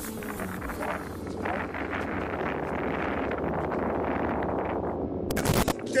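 Wind buffeting an outdoor microphone: a rough, crackling rumble that grows louder through the middle, cut off by a short, loud rush about five seconds in.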